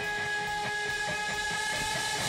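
Telecaster-style electric guitar picking quick, evenly spaced notes over steady held tones, played live through an amplifier as part of a band song.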